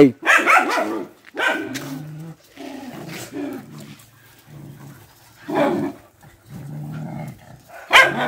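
Several dogs playing together, with a few short barks and low growls in between.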